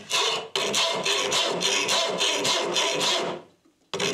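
Car-body file in its holder rasping along the edge of a wooden board in quick, repeated strokes, stopping about three and a half seconds in.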